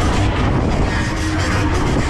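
Loud, steady rush of wind and ride noise picked up on board a spinning Break Dance fairground ride car, with fairground music underneath.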